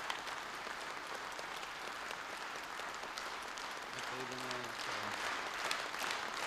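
Audience applauding steadily in a large hall, growing a little louder near the end, with a man's voice heard briefly about four seconds in.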